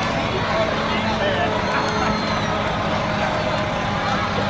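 Parked fire engine's engine running at a steady idle, a low drone throughout, with indistinct voices over it.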